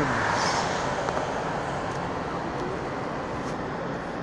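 Steady road and tyre noise from a moving vehicle, heard from inside it. A passing car swells it briefly in the first second before it eases off.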